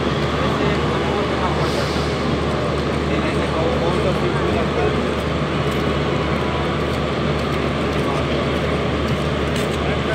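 Train running noise: a steady rumble and rattle of wheels on rails over a low hum, unchanging throughout.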